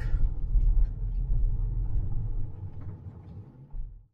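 Low rumble of a car driving slowly, heard from inside the cabin, with engine and tyre noise on a gravel lane. It eases off over the last second and a half and stops abruptly at the end.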